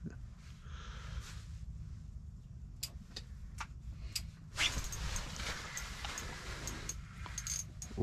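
An angler hooking and reeling in a crappie through the ice over a steady low hum: a few sharp clicks in the middle, then a few seconds of louder rustling noise.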